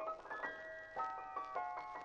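Piano music in the upper register: a few high treble notes held and ringing, stepping from pitch to pitch, with little bass beneath.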